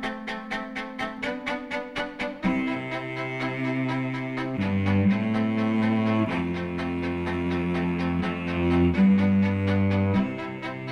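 Solo cello: a fast figure of short, evenly repeated notes, then about two and a half seconds in, long low bowed notes come in and change pitch every second or so.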